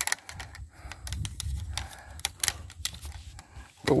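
Bare copper bond wire being bent and wrapped around a PVC pipe, making scattered, irregular light clicks and taps over a low rumble.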